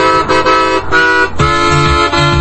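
Piano accordion playing repeated short chords on the treble side, with low bass notes joining in about two thirds of the way through.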